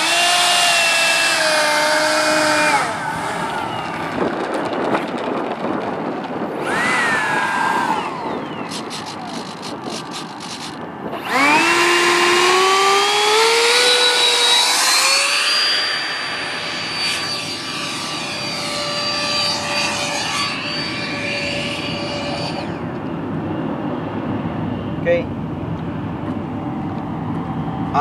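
Electric ducted fan of an 80mm RC F-86 jet spooling up with a high, rising whine, several times. There is a short run at the start, a brief blip, then a long climb to full power from about 11 seconds that holds for some ten seconds before throttling back. The long run is a takeoff roll on pavement.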